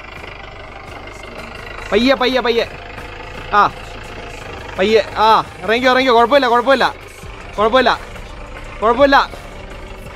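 A person's voice in short bursts, the loudest sound, over the steady low running of a Mahindra Bolero's engine as the SUV crawls up a muddy, rutted trail.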